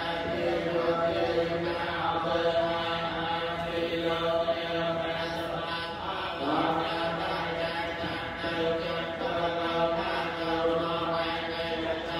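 Buddhist monks chanting, a droning recitation held on steady pitches in long phrases, amplified through a microphone; a fresh phrase begins about halfway through.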